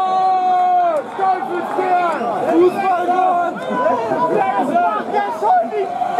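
Football crowd voices: one long, held call that drops away about a second in, then many people talking and shouting over one another.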